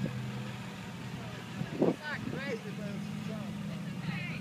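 A vehicle engine idling with a steady low hum, and voices talking briefly around the middle.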